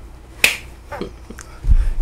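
One sharp slap of two palms meeting in a high five about half a second in, followed by a few fainter clicks and a low bump near the end.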